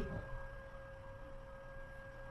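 Faint steady pitched tone with a fainter higher overtone, over a low background hum.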